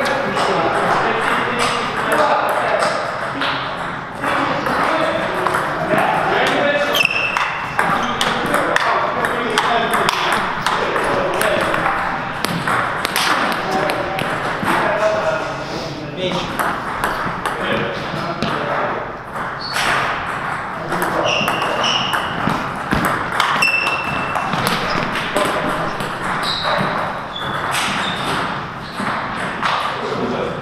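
Table tennis ball being struck by rubber-faced bats and bouncing on the table in a string of serves and rallies, a run of quick sharp clicks.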